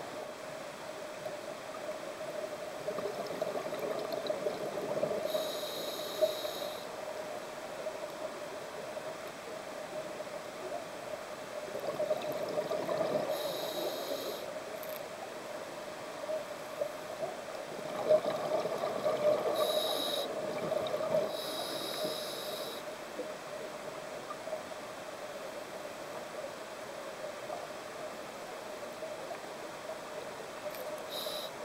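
A scuba diver breathing through a regulator underwater, heard from close by: bubbly exhalations and hissing breaths swelling up about every six to eight seconds over a steady low hum.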